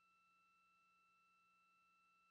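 Near silence: only faint, steady electronic tones in the broadcast audio line.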